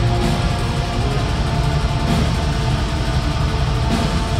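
Metal band playing live at full volume: a dense, unbroken wall of distorted guitars and drums over strong held low notes.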